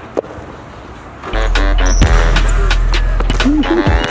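Low background at first, then about a second in a burst of music with heavy, deep bass comes in loudly, with a sharp hit half a second after it starts.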